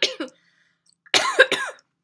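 A woman coughing, twice: a short cough at the start and a louder one a little over a second in.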